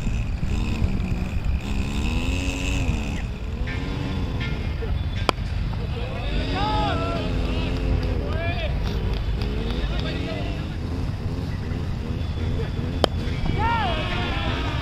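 Players' voices calling across an open cricket ground over a steady low wind rumble on the microphone. Two sharp cracks of a cricket bat striking the ball come about five seconds in and near the end.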